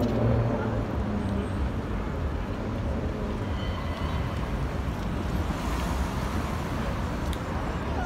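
Road traffic at a city intersection: cars driving past, a steady low rumble of engines and tyres.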